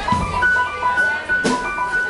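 Live jazz band (trombone, trumpet, tenor sax, keys, electric bass and drums) playing: short repeated high notes and a held high note over bass, with a sharp drum hit about one and a half seconds in.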